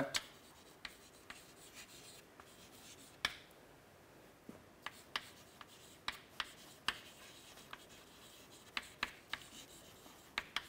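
Chalk writing on a chalkboard: a string of short, sharp irregular taps and light scratches as the letters are formed, the loudest tap about three seconds in.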